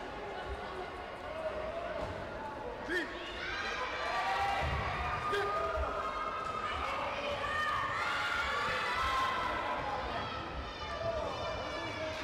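Several voices shouting in a sports hall during a taekwondo sparring bout, mostly from about three seconds in, with a few sharp thuds.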